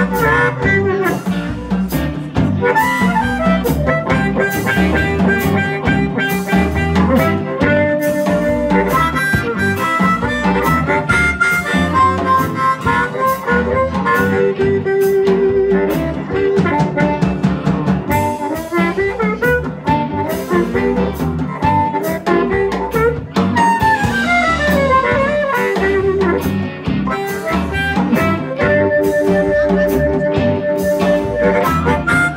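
Harmonica solo over a live electric blues band, with electric guitar, bass, keyboard and drums keeping a steady beat.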